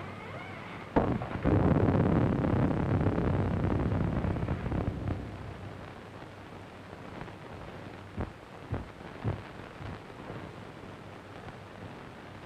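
A sudden loud crash about a second in, rumbling on and dying away over about four seconds, followed by a few soft knocks.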